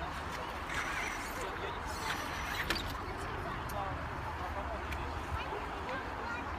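RC rock crawler knocking against boulders, with a few sharp clicks and one louder knock about two and a half seconds in, over steady outdoor noise and people's voices.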